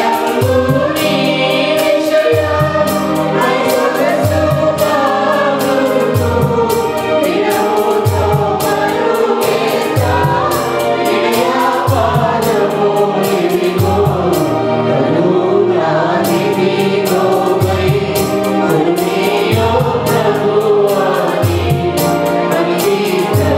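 Small church choir singing a Telugu Christian worship song into microphones. A Yamaha electronic keyboard accompanies them with bass notes and a steady beat.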